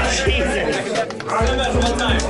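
Background music with a steady bass beat that cuts out for about half a second in the middle, under a crowd of people chattering.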